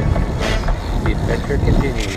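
Steady low rumble of riding a bicycle along a paved path, picked up by an action camera's microphone, with brief snatches of people's voices.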